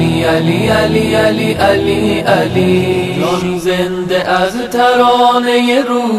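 Background devotional music: a solo voice chanting a slow melody with long held notes over a low accompaniment that drops away about halfway through.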